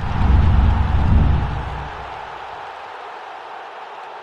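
Sound-effect stinger for an end-card graphic: a sudden deep boom with a noisy whoosh over it, which fades over about two seconds into a fainter hiss that tails away.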